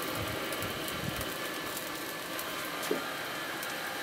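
Steady low hiss and hum of a barbecue grill running, its rotisserie spit turning, with a few soft bumps in the first second and another near three seconds.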